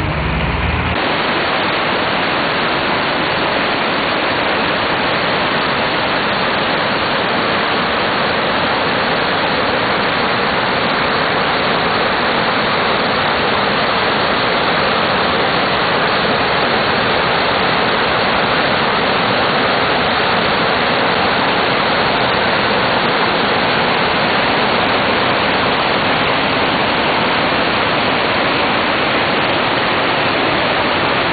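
The River Vara in flood after persistent heavy rain, its water rushing in a loud, steady roar that sets in about a second in.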